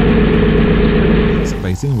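Loud steady hum with a hiss over it, from a backhoe whose bucket has struck a live underground electricity cable; it fades out near the end as a voice begins.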